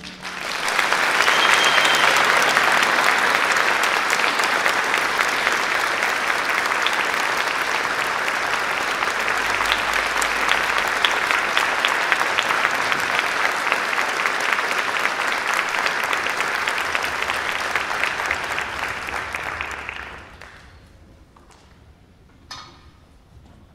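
Audience applauding, steady and dense for about twenty seconds, then dying away near the end.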